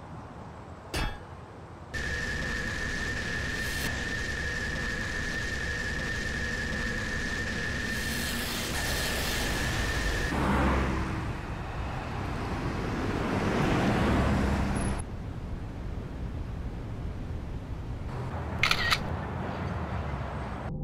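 Soundtrack of a computer-animated video playing: a click about a second in, then a steady high tone held for about eight seconds over a hiss, a noisy whoosh that swells and fades twice in the middle, and a short sharp burst near the end.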